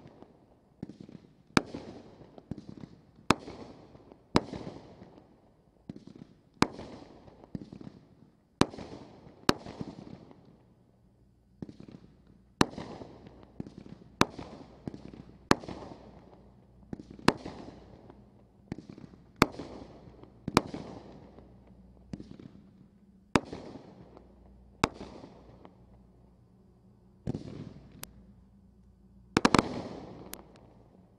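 Brothers Pyrotechnics Geronimo 500 g fireworks cake firing its shots one after another: a string of sharp bangs one to three seconds apart, each trailing off in an echoing decay, bunching closer together near the end.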